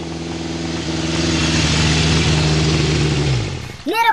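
Road traffic noise: a vehicle engine running steadily under a swelling rush of road and wind noise, which fades out shortly before the end.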